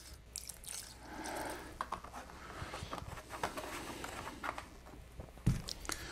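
Rubbing alcohol poured from a plastic jug into a plastic bowl of coiled bass strings, a faint trickle, followed by a few small clicks. A dull knock comes near the end.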